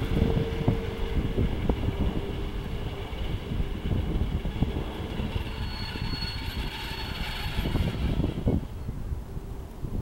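NS Plan V electric multiple unit rolling in with a steady low rumble and wheel knocks. From about five seconds in, a high-pitched metallic squealing from its running gear rises over the rumble and fades near the end; in person it was loud enough to hurt the ears.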